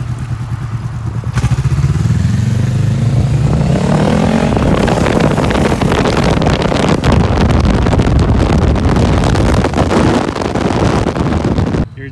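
Honda motorcycle, a balloon tied over its exhaust, pulling away and accelerating, its engine note rising over a few seconds; then a steady, loud mix of engine and wind rush as it rides along, heard from a following vehicle, cutting off suddenly just before the end.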